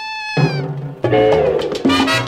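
1950s mambo band recording: a single high held note bends slightly upward and ends, then low horns enter and the full band with percussion plays from about a second in.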